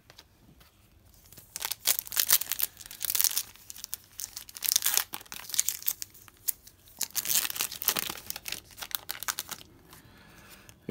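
Foil wrapper of a Tim Hortons hockey card pack being torn open and crinkled in the hands, starting about a second and a half in as an irregular crackling that comes and goes in two louder spells.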